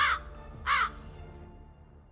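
Crow cawing sound effect added in editing, the comic 'a crow flies past' cue for an awkward silence: two short harsh caws, one at the start and one under a second in, then it fades away, over soft background music.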